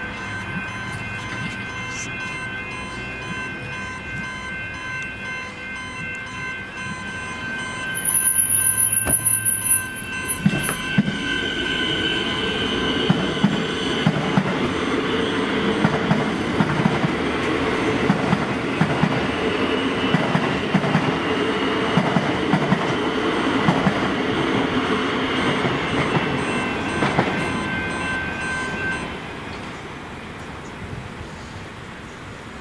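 Level crossing warning bells ring steadily while a Metro Trains Melbourne electric suburban train passes over the crossing. From about ten seconds in, the train's rumble builds, with regular wheel clacks over the rail joints, and fades near the end as the bells stop. A loud high-pitched whistle sounds briefly about eight seconds in.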